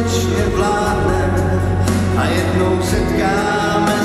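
Live band music: a male lead vocalist singing a slow ballad into a handheld microphone over electronic keyboard accompaniment with a sustained bass note that changes about three seconds in, amplified through PA speakers.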